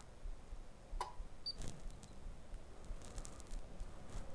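A single faint click about a second in, over low steady room noise.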